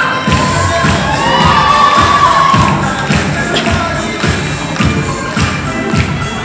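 Audience cheering and shouting over a Bollywood dance song with a steady heavy beat played through loudspeakers in a hall. The cheering is loudest about one to two and a half seconds in, with one long shout rising and falling.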